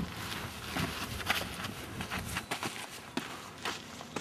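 Irregular footsteps and scuffs on gravelly dirt, made up of short crunching knocks at uneven intervals.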